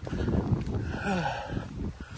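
A hiker's footsteps on a dirt forest trail, with wind rumbling on the microphone. About a second in there is a short wordless falling vocal sound, like a sigh.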